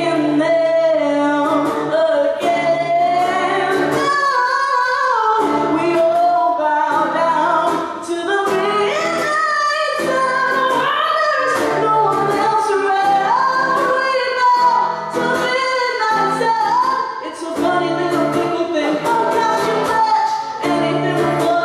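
A woman singing live, holding long sustained notes at full voice, over a strummed ukulele.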